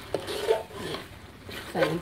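A metal spatula scrapes and clanks against a wide steel wok as a thick, dry-fried curry paste is stirred, with an irregular run of scrapes and knocks. A voice comes in near the end.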